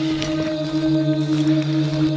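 Background music of long-held low drone tones, with a lower tone joining just as it begins.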